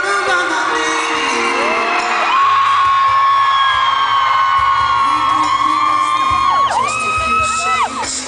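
Live pop band playing, with long high vocal notes that slide up, hold and drop away, over a steady bass line that comes in a couple of seconds in. Whoops from the audience.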